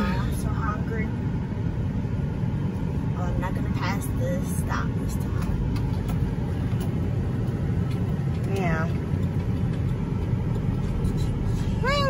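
Steady engine and road noise of a GMC truck driving slowly, heard from inside the cabin, with faint short voice sounds around four seconds in and near nine seconds.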